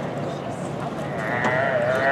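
Calf bawling once as it is thrown and tied down: a wavering call of about a second, starting a little past the middle.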